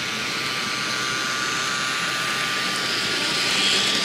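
N scale model train camera car running along the track, a steady whirring whine from its motor and wheels over a hiss, getting a little brighter near the end.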